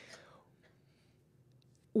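A pause in a woman's speech into a handheld microphone: a faint, breathy trailing-off in the first half second, then near silence.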